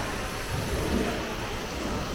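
Low, steady rumble with a hiss over it, the ambient battlefield soundscape played in a darkened First World War trench exhibit.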